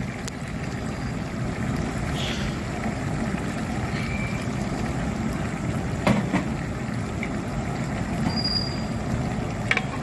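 Chicken frying in oil in a large aluminium pot: a steady sizzling rush, with one sharp knock about six seconds in.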